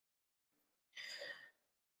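Near silence, with one faint, short breath about a second in.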